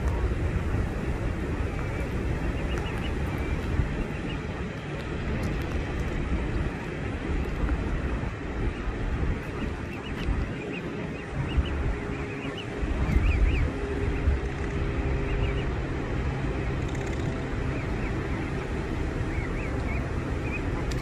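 Wind rumbling on the microphone, with Canada goose goslings peeping faintly again and again.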